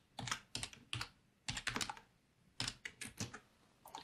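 Keystrokes on a computer keyboard, typed in short quick bursts of clicks with brief pauses between them.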